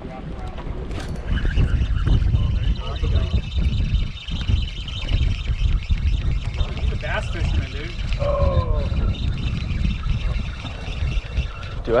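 Wind buffeting the microphone over choppy water, with a spinning reel being cranked as a steady whir, and faint voices in the background partway through.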